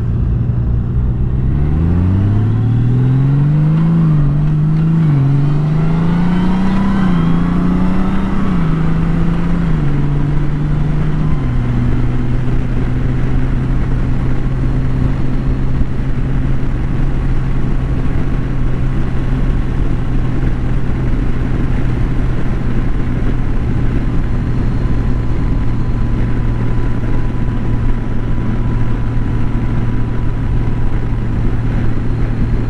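Honda Gold Wing's flat-six engine pulling away from a stop and accelerating. Its pitch climbs and drops back several times as the dual-clutch transmission shifts up, then settles about eleven seconds in to a steady drone at cruising speed.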